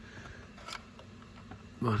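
Low handling noise with a faint click about three-quarters of a second in and a weaker one later, as the plastic steering-column switch module is fitted onto the column by hand.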